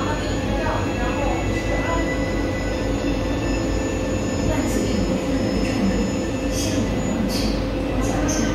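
Steady mechanical rumble with a thin, constant whine, heard from inside a moving Ferris wheel capsule, with a few short hisses near the end.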